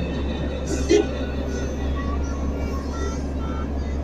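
Ride noise from a moving road vehicle at night: a steady low rumble, with faint music and voices mixed in and a brief louder sound about a second in.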